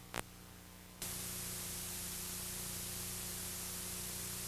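Steady hiss with a low electrical hum from a VHS tape transfer, with no speech. A short click comes just after the start, and the hiss is quieter for about the first second before it steadies at a higher level.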